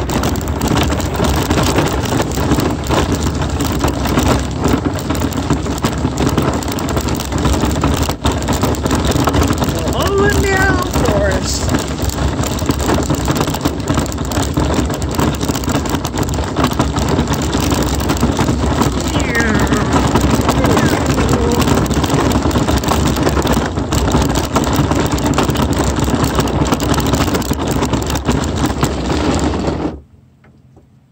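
Steady rumble and crunch of a vehicle rolling along a gravel road, cutting off suddenly at the end.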